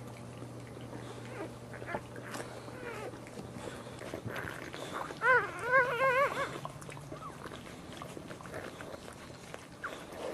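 A newborn Boxer puppy gives a run of about four short, wavering squeaks about halfway through while its mother licks it. Otherwise soft licking and rustling on the cushion.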